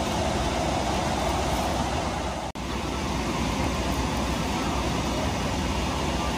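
Steady airliner cabin noise inside a Boeing 777-200LR, mostly the air-conditioning airflow, with a split-second dropout about two and a half seconds in.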